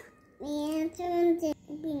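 A small child singing two held, steady notes one after the other, then a short sung word near the end.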